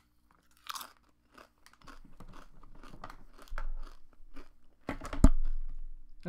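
A person biting into a crunchy cookie, then chewing it with a long run of small crunches. One sharp, low thump near the end is the loudest sound.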